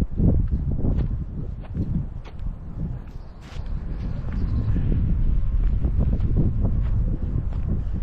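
Wind buffeting the microphone as a low, uneven rumble, with short knocks throughout.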